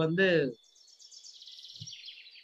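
A man's voice for about half a second, then a faint, high-pitched trill of rapid chirps that falls slightly in pitch, typical of a small bird calling in the background.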